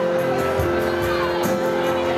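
A live band plays on stage: acoustic guitar and electric bass, with long sustained notes over a steady beat.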